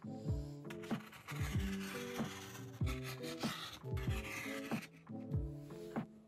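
Cotton fabric rustling and rubbing as hands smooth and handle it, over light background music.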